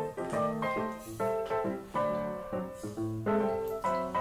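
Background piano music: a light melody of held notes that change every fraction of a second.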